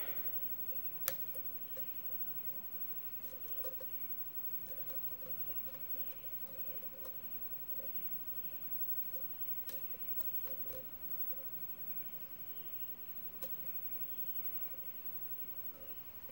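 Lock pick and tension wrench working the pins of a brass key-in-knob lock cylinder: faint scraping as the pick lifts the pins, with a few small sharp clicks, the loudest about a second in. It is the sound of single-pin picking a cylinder with security pins, feeling for false sets and counter-rotation.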